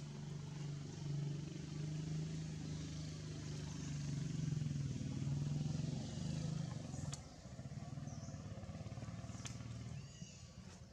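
A motor engine running steadily nearby, a low hum that grows a little louder toward the middle and drops off about seven seconds in, with two sharp clicks later on.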